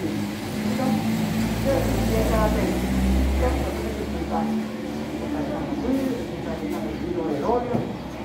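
A car passing on the street, a low rumble that builds over the first couple of seconds and fades by about four seconds in, under indistinct voices.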